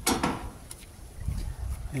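Tin snips cutting through a thin sheet-metal downpipe: a sharp snip right at the start, then a few faint clicks of the blades and metal being handled over a low rumble.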